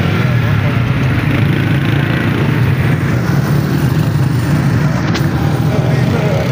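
Motorcycle engine running steadily while riding, mixed with wind and passing street-traffic noise.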